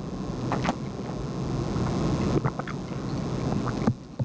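Water being poured into a glass close to the lectern microphone: a rushing noise that builds steadily, with a few light clinks, and cuts off suddenly near the end.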